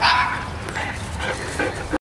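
A small dog gives one sharp, high-pitched yip right at the start, followed by a few fainter, shorter calls in the second half.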